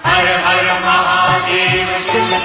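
Devotional Hindu chant to Shiva sung with instrumental accompaniment, a new sung phrase starting loudly at the beginning.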